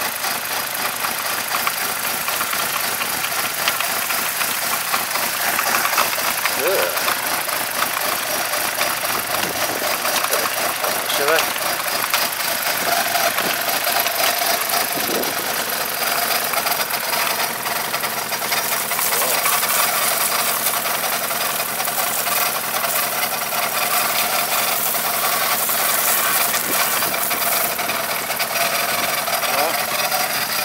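BMW 318 four-cylinder engine running while a garden hose pours water into its open oil filler, the water splashing in a steady dense hiss over the engine's sound; the water is churning with the oil into a frothy emulsion.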